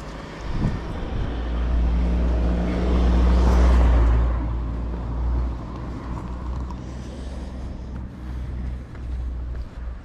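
A car driving past on the street, its tyre and engine noise swelling to its loudest a few seconds in and then fading away.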